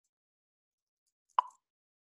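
Near silence on the call, broken once by a single short, sharp pop about one and a half seconds in.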